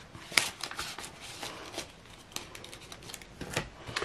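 Banknotes and cash envelopes being handled: a string of soft rustles and crisp clicks, the sharpest about half a second in.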